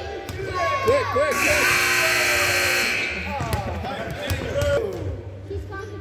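Gymnasium scoreboard buzzer sounding once, a steady electric buzz lasting about a second and a half, marking the end of a timed shooting round. Children's voices and a few basketball bounces are heard around it.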